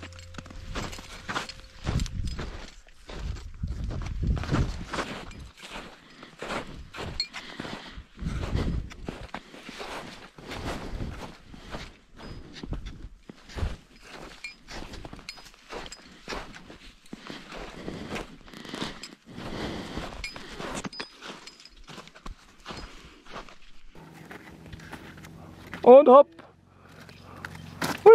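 Crampon-shod mountaineering boots crunching and scraping over glacier ice and snow, step after irregular step, with a few low rumbles. A short burst of voice comes near the end.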